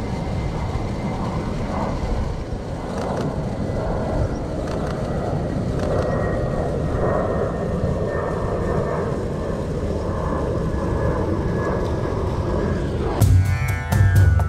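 Steady low rushing noise picked up by a chest-mounted camera outdoors. Music with drums starts about a second before the end.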